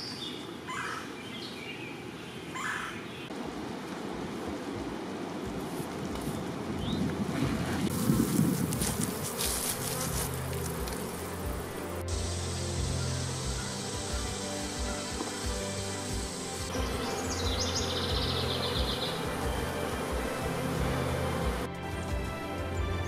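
Honeybees buzzing as a steady, dense drone.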